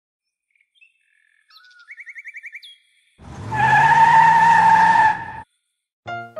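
Cartoon sound effects: birds chirping and trilling, then about three seconds in, a loud car effect with a rising engine note and a steady tyre-squeal tone, which stops abruptly after about two seconds.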